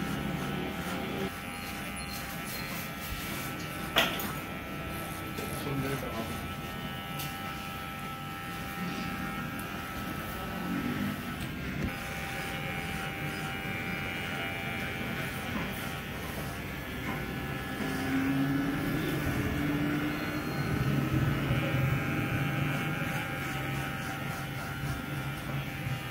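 Dingling electric hair clipper buzzing steadily as it cuts short hair over a comb, with a sharp click about four seconds in.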